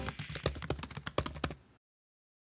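Computer-keyboard typing sound effect: a quick run of key clicks, about nine a second, timed to text typing onto the screen. It stops suddenly after about a second and a half.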